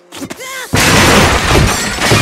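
A few short squeaky cartoon-voice sounds, then about two-thirds of a second in a sudden loud crash with shattering, as of something breaking, that lasts over a second.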